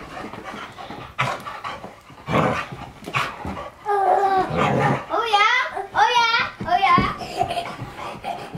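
A beagle panting and moving about for the first few seconds. Then a toddler's excited high-pitched squeals and shouts, several wavering cries in a row.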